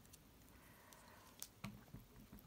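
Near silence with faint handling of card and craft tools on a cutting mat: a few light clicks, the clearest about one and a half seconds in.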